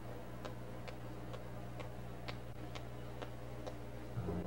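Eight sharp percussion clicks at an even pace, a bit over two a second, keeping a steady tempo, over a steady low hum from the recording.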